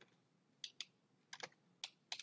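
Faint computer keyboard keystrokes: a handful of separate key presses, about five, spaced irregularly.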